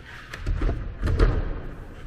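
A locked wooden double door being tried: the handle and latch click, and the doors knock in their frame without opening, in a run of knocks starting about half a second in.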